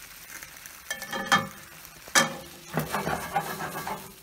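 Pasta and tomato sauce sizzling in a skillet on the stove, with a few sharp knocks against the pan, the loudest about two seconds in, and a rougher stretch of stirring noise near the end.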